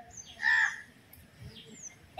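A crow caws once about half a second into the pause, with faint, short, high chirps of small birds.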